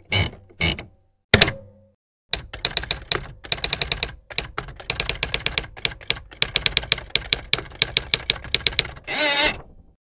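Typewriter sound effect: a few separate key strikes, a short pause, then a rapid, uneven run of key clacks for about six seconds, ending in a half-second rasp near the end.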